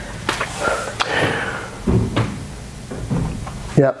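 A few light knocks and thuds from a Pilates reformer as a person sits down and shifts their hands and body on it.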